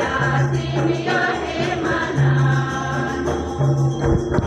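A chorus of women singing an Adivasi folk dance song together, with light jingling percussion behind the voices.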